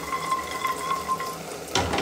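An aluminium pressure cooker set down onto the gas stove's burner grate with one metal clunk near the end, over a faint steady hiss of cooking on the stove.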